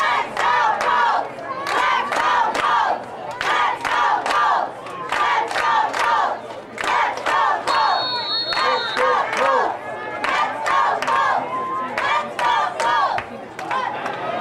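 Football crowd of many voices shouting and yelling in quick, overlapping calls, with a brief high whistle about eight seconds in.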